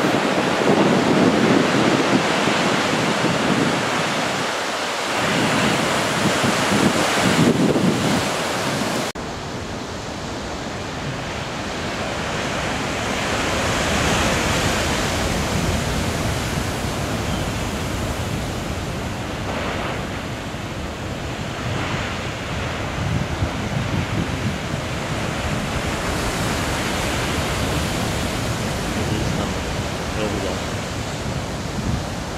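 Heavy storm surf breaking and churning over rocks: a continuous wash of waves and whitewater, with wind buffeting the microphone. About nine seconds in, the sound changes abruptly and becomes deeper and duller.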